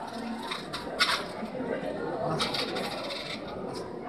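A series of light, sharp clinks and taps from small hard props being handled, the loudest about a second in and a few more around the middle, over a faint room background.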